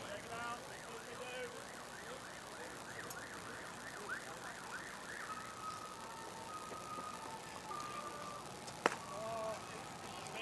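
A faint, distant electronic siren cycling through patterns: quick rising-and-falling yelps at about three a second, then a slow two-tone alternation between a higher and a lower note. Near the end there is a single sharp click.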